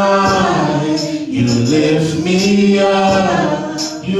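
A group of voices singing a slow gospel worship song in long held notes, with a short break for breath about a second in and another near the end.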